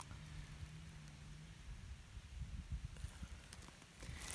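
Quiet outdoor ambience. A faint, steady low hum runs for the first second and a half, then soft, irregular low bumps come as the handheld phone is moved.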